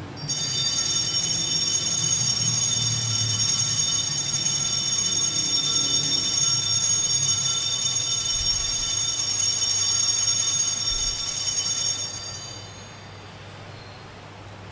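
Altar bells ringing without pause for about twelve seconds, a high, steady ringing that stops near the end. The ringing marks the elevation of the consecrated host at the consecration of the Mass.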